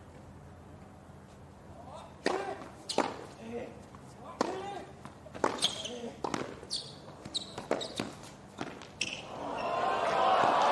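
Tennis rally on a hard court: about eight sharp racquet-on-ball hits, roughly a second apart, most followed by a player's grunt. Crowd noise rises near the end as the point finishes.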